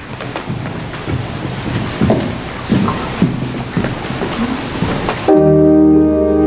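Rustling and shuffling noise with scattered low knocks, then a church organ starts abruptly about five seconds in, playing sustained chords, louder than anything before it.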